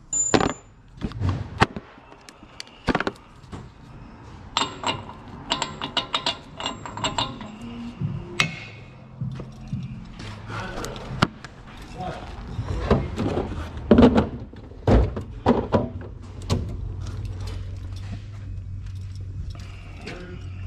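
Irregular clinks and knocks of tools being handled, including impact sockets rattling in a plastic socket case, with music and voices in the background.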